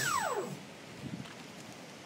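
Motorized surfboard's thrust motor spinning down: its whine falls steeply in pitch and dies away within about half a second, leaving faint wind noise.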